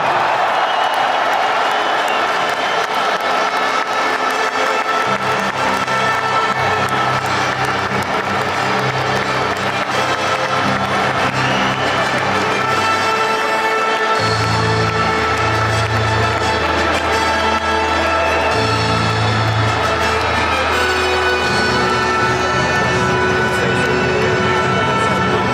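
Music over a stadium public-address system as the teams walk out, with a large crowd cheering and applauding underneath. The music is made of long held notes; a bass line comes in about five seconds in, and a deeper bass joins around fourteen seconds.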